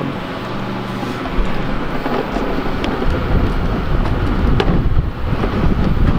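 Wind buffeting the camera microphone: an irregular low rumble that swells about a second and a half in and keeps surging. Under the first couple of seconds there is a low, steady hum.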